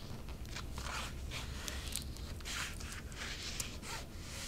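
Hands creasing the fold of a spine-wrap pamphlet binder: a series of short paper-and-card scraping rubs as the fingers slide along the crease.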